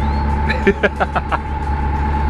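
A narrowboat's engine running steadily while under way, a continuous low hum with a steady whine above it, and a few short vocal sounds part way through.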